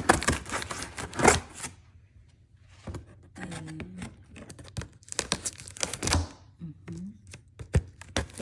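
Packing tape on a cardboard shipping box being slit with a blade and pulled apart, heard as runs of short scraping, tearing strokes with a pause of about a second near two seconds in.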